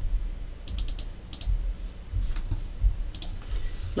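Computer mouse clicking: a quick run of about four clicks a little under a second in, then a few more single clicks, over a low rumble.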